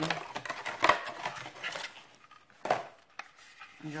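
Clear plastic blister pack of a large craft paper punch being handled and opened: a run of plastic crackles and clicks, then one sharp click a little under three seconds in.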